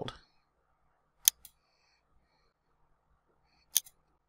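Two short, sharp computer mouse clicks about two and a half seconds apart, with near silence between them.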